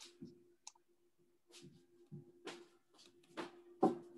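Faint scattered clicks and rustles, four or five of them with the loudest near the end, over a steady low electrical hum: open-microphone room tone on an online call.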